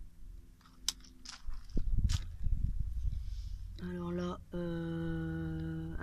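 A woman's voice holding a long, level hesitation sound ('euh') in two stretches in the second half, over a low rumble, with a sharp click about a second in.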